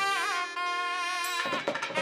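Two nadhaswarams (South Indian double-reed pipes) playing a kaavadi sindhu melody with sliding, ornamented notes, over thavil drum strokes. About half a second in, the drums pause under a long held note; the thavil strokes come back about a second and a half in.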